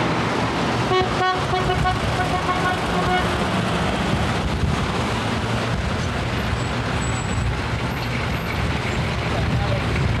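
City street traffic noise with a steady low rumble of passing vehicles. A horn sounds in several short toots between about one and three seconds in.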